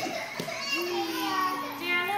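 Toddlers' voices as they play: one young child holds a long, slightly falling vocal sound for about a second, with other children's chatter around it.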